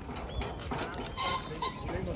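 A young child's short, high-pitched squeal a little over a second in, with a smaller cry just after, over steady outdoor background noise.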